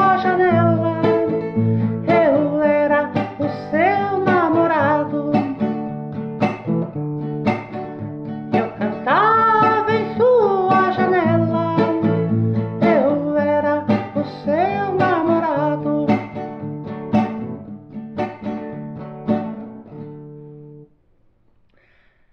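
A song played on plucked guitar, with steady bass notes under a sliding melody line of wordless singing. The music stops about a second before the end.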